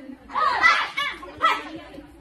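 Children's voices: high-pitched talking and calling out in short phrases.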